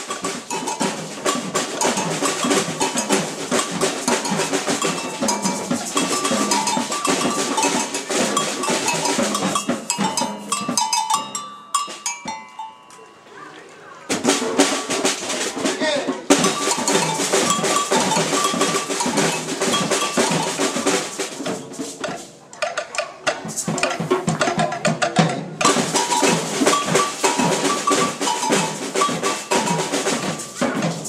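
Percussion ensemble of snare drums and toms struck with sticks, playing a fast rhythmic piece together. The playing thins to a quieter break a little before halfway, then the whole ensemble comes back in, with short drop-outs later on.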